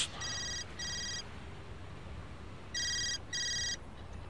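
Mobile phone ringing: a high electronic double ring, two short beeps, a pause of about a second and a half, then two more.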